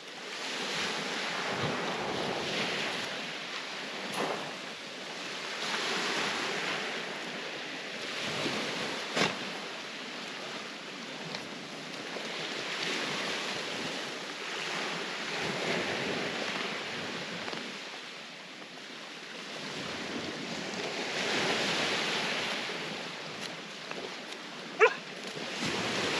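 Small waves washing onto the shore, each swelling and fading over a few seconds, with wind on the microphone. A few short sharp clicks are heard at times.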